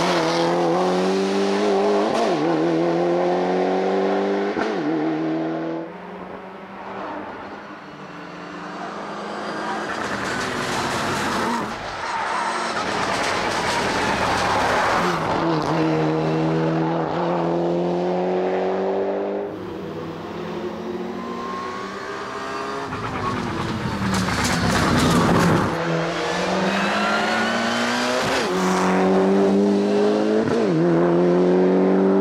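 Mitsubishi Lancer Evo 9 race car's turbocharged 2.0-litre four-cylinder engine under hard acceleration. The pitch climbs through each gear and drops at every shift. It grows louder as the car passes close and fades as it drives away, over several passes through the bends.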